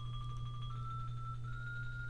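Sampled xylophone from the Virtual Drumline library playing back in Sibelius 5: after the top of a rising run, two more notes step upward in pitch and the last rings on. A steady low hum runs underneath.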